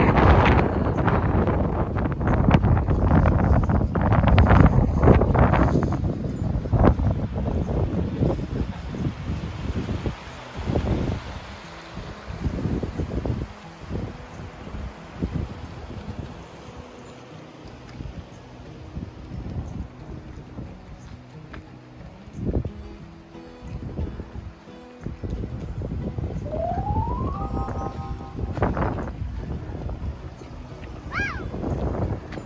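Wind buffeting the phone's microphone, loud for the first several seconds and then dying down.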